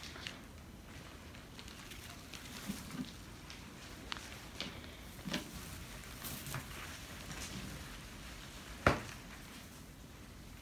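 Faint rustling and scattered light clicks of turkey hens stepping and scratching in straw bedding, with one sharper click about nine seconds in.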